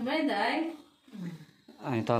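A person's voice, drawn out and wavering in pitch, breaks off about three-quarters of a second in. A lower voice follows briefly, and a deeper voice starts speaking near the end.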